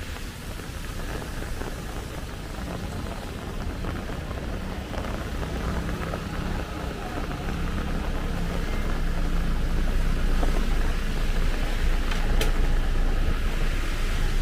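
Rainy street traffic: rain on wet pavement and a bus's engine running close by, a low rumble that grows louder toward the end. A sharp click sounds once, about twelve seconds in.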